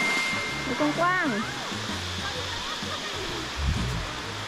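Small sea waves washing onto a pebbly shore in a steady rush, louder at first and easing off.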